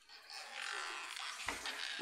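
Floodwater swishing and sloshing as someone wades through a flooded room, with one low bump about one and a half seconds in.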